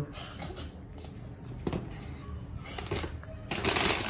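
Faint rustling and light handling clicks, then a loud crinkle of a clear plastic bag being grabbed and opened near the end.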